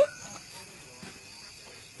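Quiet outdoor background between voices: a faint, steady, high thin hiss, with a small tick about a second in.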